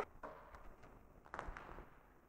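A single sharp click, then a few faint knocks and handling sounds as parts of a table saw and its power cord are handled.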